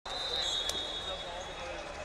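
Referee's whistle blown once, a steady shrill note of about a second and a half that starts the bout, over the chatter of a busy arena. A sharp click comes partway through the whistle.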